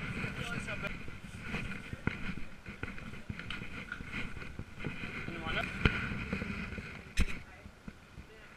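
Handling noise from a small action camera being carried indoors and touched: scattered knocks and rubbing, with a sharp click about seven seconds in as a hand reaches for the camera.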